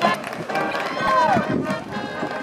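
Marching band playing outdoors, with voices close by and one smooth falling pitch glide about a second in.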